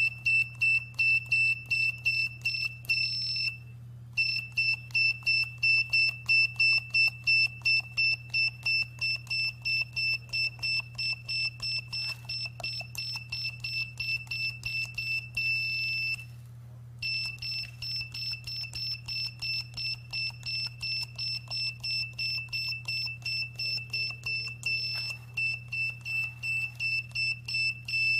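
Laptop keyboard tester beeping once for each key pressed on an Asus laptop keyboard: a short, high-pitched beep that repeats about two to three times a second, each beep showing the key works. The beeping stops briefly twice, a few seconds in and again about halfway.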